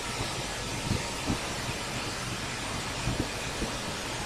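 Steady background hiss from the recording microphone, with a few soft, short low thumps scattered through it.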